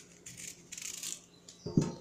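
Small kitchen knife scraping and cutting the tough peel off a green banana: a soft scratchy sound over the first second, with a few light clicks of the blade.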